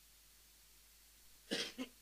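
Near silence, then a brief cough about one and a half seconds in, heard as two short bursts close together.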